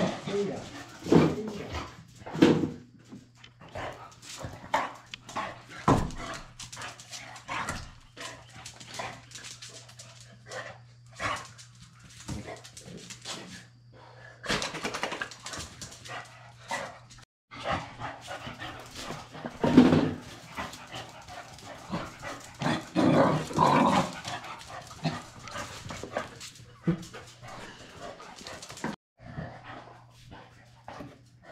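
Two dogs playing, with repeated barks among scuffling and knocking, loudest about 20 s and 23–24 s in; a steady low hum runs underneath.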